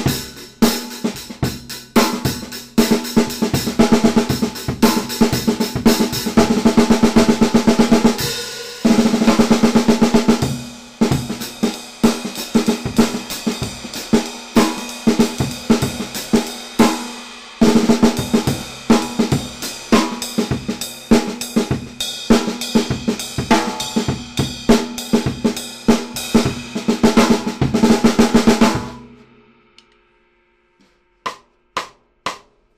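Taye GoKit 13x3-inch snare drum played with sticks in fast strokes and rolls, with a strong ringing tone. There are short breaks around 9 and 17 seconds in, and the playing stops just before the end.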